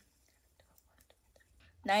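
Near silence: room tone with a few faint ticks, until a woman's voice begins near the end.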